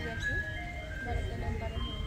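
An ice cream vendor's jingle playing through a loudspeaker: a simple melody of held electronic notes, with voices underneath.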